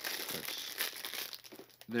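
Plastic packaging crinkling as kit parts are handled, dying away about a second and a half in.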